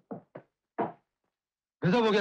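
A few short, dull knocks in quick succession, the last one the loudest.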